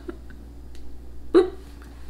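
A single short, sharp burst of laughter about a second and a half in.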